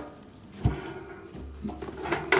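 A soft knock and faint handling noise as a hand works the controls on a Honda portable generator, which is not running yet. The knock comes about two-thirds of a second in, with a brief low rumble later.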